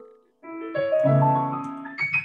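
Solo piano playing a slow gospel piece: a held chord fades away, there is a brief break, then a new chord comes in about half a second in with further notes laid over it.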